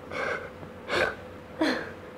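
A woman crying: three sobbing gasps in quick succession, the last one voiced and falling in pitch.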